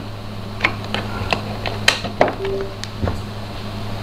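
Scattered small clicks and taps of a microSD card adapter and USB dongle being handled and plugged into a PC, over a steady low electrical hum, with one brief short tone about halfway through.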